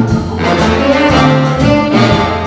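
Live big band playing, the horn section holding sustained chords over bass, with sharp accents from the drums.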